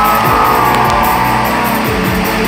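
Live band music in an instrumental passage between sung lines: a held lead melody over a heavy bass and beat.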